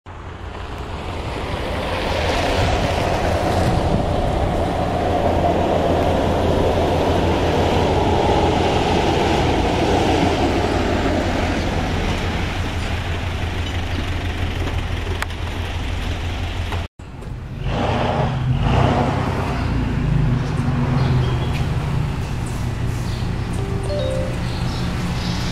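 Steady road and engine noise of a moving car, with a pulsing low rumble like wind buffeting the microphone. About two-thirds through it cuts off abruptly and a different, uneven background takes over.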